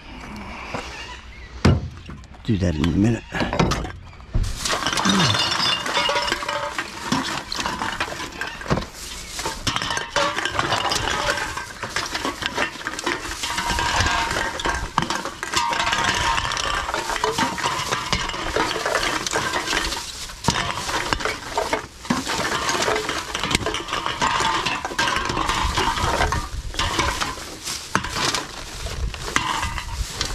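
Thin plastic bag crinkling while empty aluminium drink cans clink and rattle against each other as gloved hands rummage through a heap of cans and bottles. A few knocks and a low scrape in the first seconds, then continuous dense rustling and clinking.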